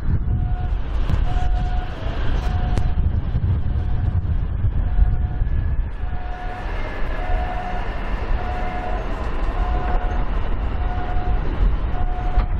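Low, steady rumble of rail traffic at a busy station. Over it, a short electronic beep tone repeats about once a second.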